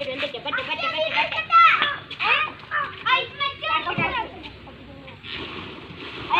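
Children's voices calling and chattering excitedly over one another as they play, dense for the first four seconds, then dropping to a quieter murmur of background noise.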